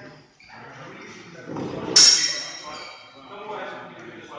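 Steel longsword training blades clash once about halfway through, a sharp strike that rings on briefly.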